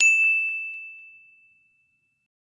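A single bright ding, an editing chime sound effect: one clear high tone that rings and fades away over about a second.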